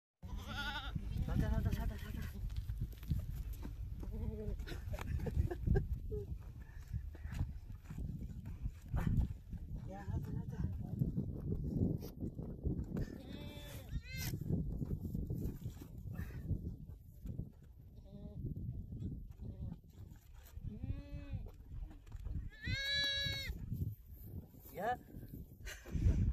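Goats bleating several times, the longest and loudest call near the end, over a steady low rumble of wind on the microphone.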